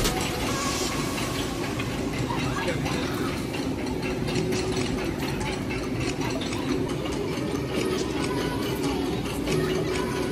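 Log-flume boat hitting the splash pool with a burst of splashing water in the first second, then a steady wash of moving water with faint voices behind it.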